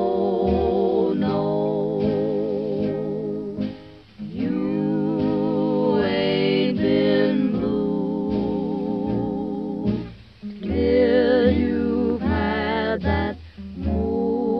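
1930s jazz recording: a slow melody with heavy vibrato over plucked guitar accompaniment. The phrases break off briefly about four and ten seconds in.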